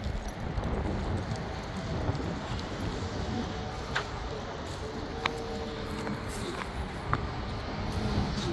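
Leashed dogs walking on asphalt: a few light clicks and taps from their claws and collar tags over a low, steady outdoor rumble.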